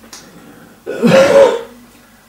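An elderly man clears his throat once, a short rough sound about a second in.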